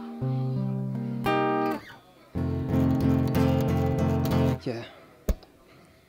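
Acoustic guitar played solo: ringing chords, then a quick run of repeated strums that dies away, followed by a single sharp tap near the end. A short "yeah" is spoken just before the tap.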